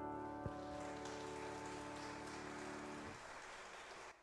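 The final chord of a grand piano accompaniment rings out and is released about three seconds in, while light applause starts about a second in and continues to the end.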